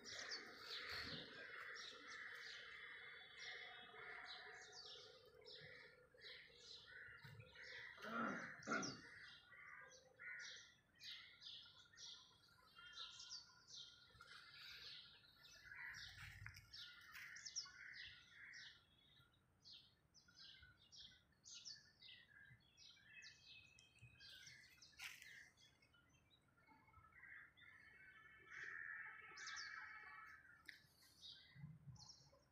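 Small birds chirping faintly, a steady scatter of short, high chirps, with a brief louder sound about eight seconds in.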